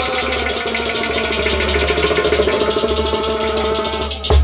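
Harmonium playing sustained notes, with a fast, even percussion pulse of many strokes a second running underneath.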